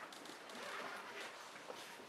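Quiet room tone with a few faint, brief clicks and rustles.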